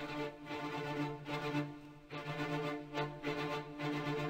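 Instrumental background music with a steady pulse.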